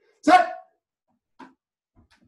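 A single short, loud vocal cry about a quarter of a second in, followed about a second later by a much fainter brief sound.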